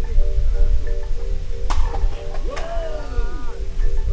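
Electric guitar holding a chord of several steady tones, cut off with a sharp click about halfway through and starting again near the end, over a constant low rumble. A brief sound that glides up and down comes in just after the break.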